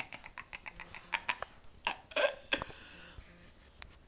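A man giggling in quick, breathy pulses that die away over the first two seconds, followed by a short breath and the rustle and click of a handheld camera being turned.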